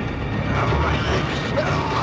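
Mechanical clicking and whirring sound effects from a film trailer's soundtrack, over a steady low drone, with short rising and falling whines.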